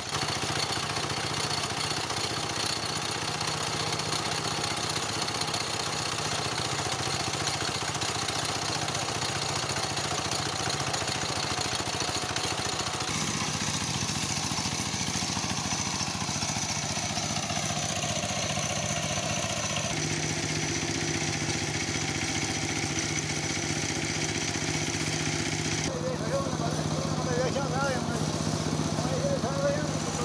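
A small engine running steadily, its tone shifting a few times along the way.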